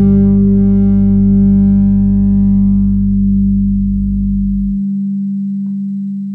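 The final note of an electro-funk electric bass arrangement, struck just before and held: a steady tone whose upper overtones die away over about three seconds. A deep low layer underneath cuts off suddenly about five seconds in.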